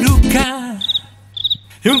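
The sung track stops, and in the pause a few short, high cricket chirps sound, the stock crickets-in-silence comic effect. The singing resumes near the end.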